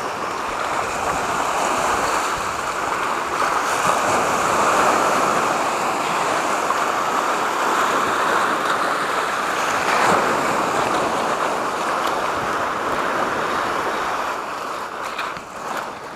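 Sea waves breaking and washing over a low rocky shore, a steady surf that swells about four and ten seconds in and eases near the end.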